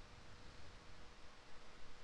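Quiet room tone: a faint steady hiss with a thin, steady hum.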